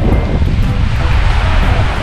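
Wind rumbling on the microphone over the wash of breaking surf, with some music underneath.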